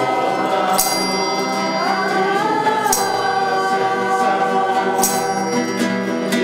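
A small group of women singing a pastorella, a traditional Italian Christmas carol, together, their voices rising in pitch about two seconds in. A metal hand percussion instrument strikes about every two seconds and rings on briefly.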